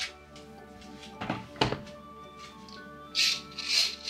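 Background music, with two dull thunks of objects set down on a wooden desk about a second and a half in. Near the end come three loud swishes as a curtain is drawn back.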